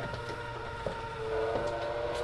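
Hammond B3 organ sounding faintly: a click a little under a second in, then a single held note that starts just over a second in and sustains.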